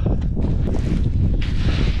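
Wind buffeting the action camera's microphone, a steady low rumble, with a short hiss near the end.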